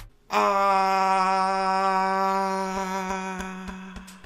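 A single long held note at one steady pitch, rich in overtones, starting about a third of a second in and slowly fading over nearly four seconds, with a few faint clicks near the end.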